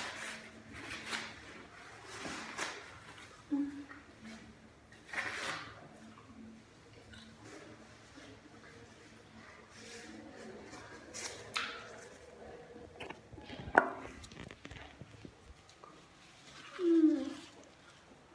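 Someone chewing and handling toilet paper: sporadic soft rustles and mouth sounds, a sharp click about 14 seconds in, and a short falling low hum near the end.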